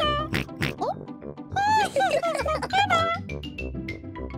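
High-pitched, wordless cartoon-character vocalizations with pig oinks, in two bursts (one at the start, one from about one and a half to three seconds in), over light children's background music.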